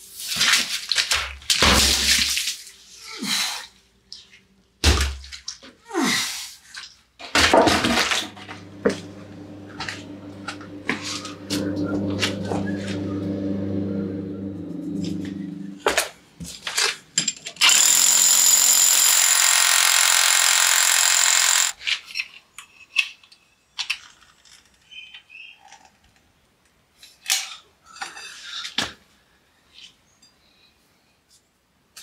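Heavy granite slab knocking and scraping in the first few seconds, then a steady machine hum, then a hammer drill boring into granite ledge for about four seconds, the loudest sound. Scattered light knocks and clinks follow.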